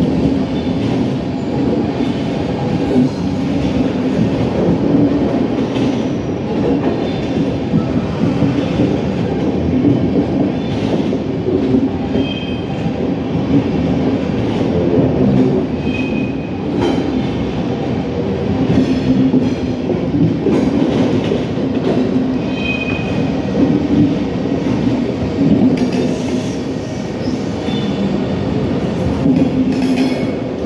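SBB passenger coaches rolling past on the track, a steady rumble of wheels on rail with a few brief high squeals from the wheels.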